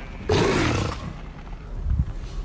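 A horse snorting once: a short, breathy, fluttering blast that starts about a third of a second in and lasts under a second.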